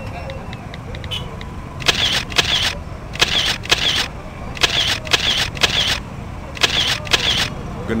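Phone camera shutter clicks, mostly in pairs, four times over about five seconds, over a steady low rumble.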